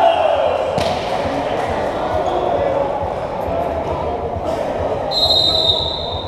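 Volleyball play: a loud shout at the start, a sharp ball hit about a second in, and players and spectators shouting and chattering. A referee's whistle is blown for about a second near the end, stopping the rally.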